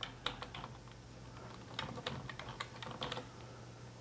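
Typing on a PC keyboard: irregular key clicks in short runs with pauses between them, over a low steady hum.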